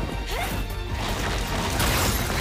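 Anime fight sound effects over the episode's background music: a sword strike lands with a sharp crash near the end.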